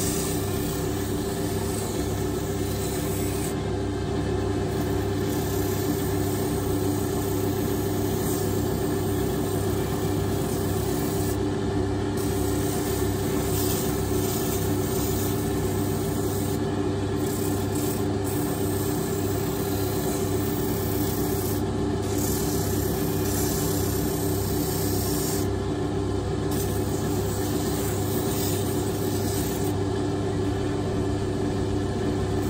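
Drill press motor running steadily, used as a lathe to spin a wooden plane knob, while a hand tool held against the turning wood rubs and scrapes it into shape.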